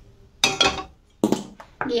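Empty stainless-steel kadhai being set down on a gas stove's burner grate: two metallic clanks about a second apart, each ringing briefly.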